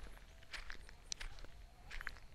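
Footsteps of a person walking on a dirt track: several soft, faint scuffing steps.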